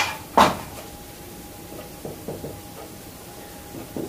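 Whiteboard eraser and marker handled against a whiteboard: two short, sharp knocks or scrapes near the start, then a few faint light taps as the marker writes.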